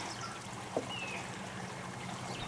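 Quiet background noise with a faint low hum, a light click just before a second in, and one short, faint high chirp right after it.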